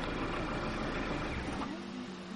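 A low, steady outdoor rumble cuts off suddenly about one and a half seconds in, and quiet music begins.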